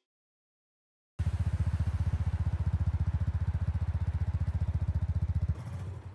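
Motorcycle engine idling with a rapid, even throb, starting suddenly about a second in and dropping away shortly before the end.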